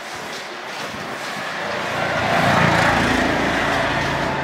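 A motor vehicle passing close by on the street, its noise swelling to a peak about two-thirds of the way through and then easing off.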